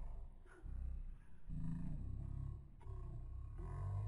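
A recorded voice played back through an online voice-changer effect that pitches it very deep, so it comes out as a low, growling, roar-like sound in phrases with short breaks between them.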